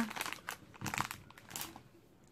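Candy packaging crinkling as it is handled, in a few irregular rustles that fade out by the end.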